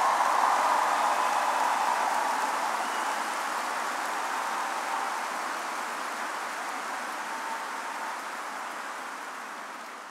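Large indoor crowd applauding, loudest at the start and dying away gradually.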